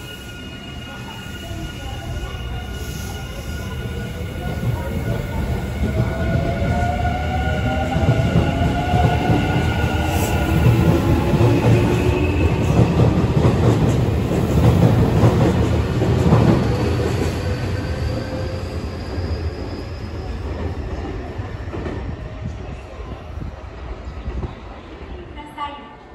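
Nankai electric train pulling out of the station: its traction motors whine rising in pitch as it speeds up, over wheel-and-rail rumble. The sound swells to a peak in the middle and then fades as the train leaves.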